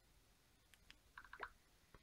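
Near silence with a few faint ticks about a second in: the S Pen's tip tapping on the tablet's glass screen.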